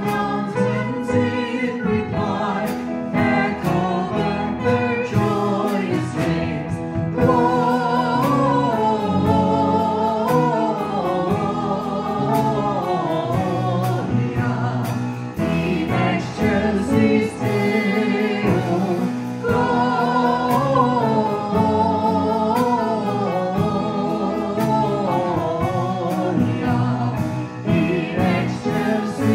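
Christmas carol sung by song leaders with a live band of keyboards, drums, bass and electric guitar. The sung melody winds up and down in long drawn-out runs over a steady beat.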